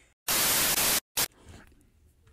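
A loud burst of white-noise static lasting under a second, starting and stopping sharply, followed by a second very short burst.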